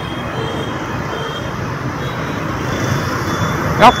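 Steady road traffic noise from a busy city street: a continuous wash of vehicle engines and tyres.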